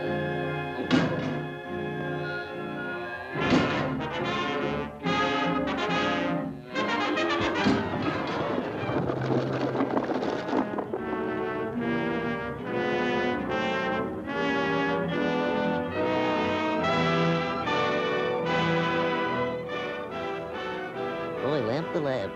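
Orchestral cartoon score with the brass to the fore, playing short repeated chords, with a few sharp accents, the first about a second in.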